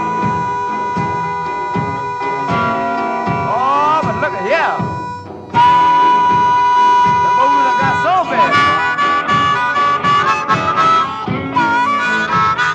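Blues harmonica solo over a steady guitar rhythm. It opens with long held notes, bends up through several notes near the middle, and plays a busier run of short notes in the last third.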